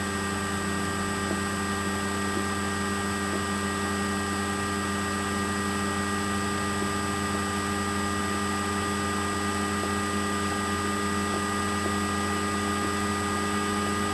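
Steady electrical hum and hiss with several constant high whining tones, unchanging throughout, with no distinct events above it.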